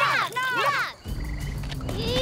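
Children's voices cheering "yeah!" in a quick run of shouts that stops about halfway through. Then a night ambience: a frog croaking briefly over a low steady hum.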